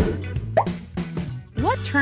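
Background music with a quiz-transition sound effect: a sharp burst as it starts, then a short rising pop about half a second in.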